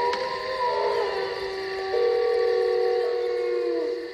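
Several sustained siren-like tones held together at different pitches, with a buzzier tone joining about two seconds in; the lowest tone dips in pitch as they all die away near the end.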